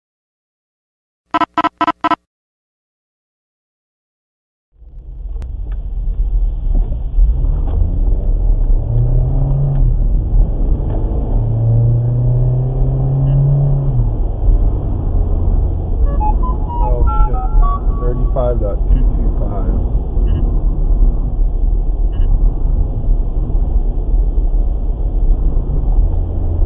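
Four short electronic beeps in quick succession about a second in, then a few seconds of silence, then steady road and engine noise from inside a moving car.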